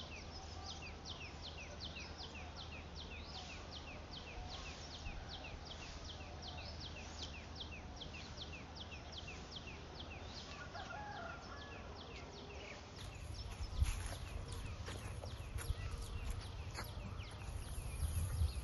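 A bird chirping over and over, about three short, high, falling chirps a second. About two-thirds of the way through, the sound changes to a low rumble with a few sharp knocks.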